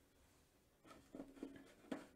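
Mostly near silence, with a few faint, short strokes in the second half: a watercolour brush working on paper.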